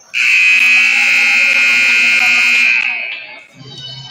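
Scoreboard buzzer sounding one loud, steady blast of about three seconds as the game clock runs out, signalling the end of the period.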